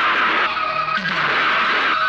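Loud action-film background score: a dense rushing noise with a held high note and a repeating falling figure underneath.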